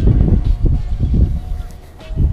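Wind buffeting the microphone: an uneven low rumble that dies down near the end.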